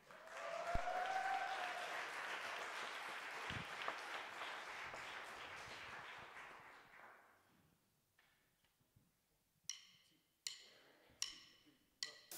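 Audience applauding, with a whistle rising and falling near the start; the applause dies away after about seven seconds. Near the end, four sharp clicks about three-quarters of a second apart: drumsticks struck together as a count-in for the next song.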